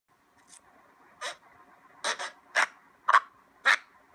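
Cartoon baby sucking on a pacifier: about seven short sucks in four seconds, at an uneven pace.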